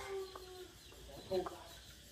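A chicken calling faintly: one drawn-out note, then a short call about a second and a half in.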